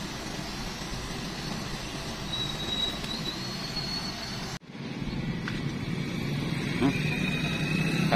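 Steady running noise inside a car's cabin as it moves slowly. About halfway through it cuts off suddenly and gives way to outdoor ambience with a steady low hum.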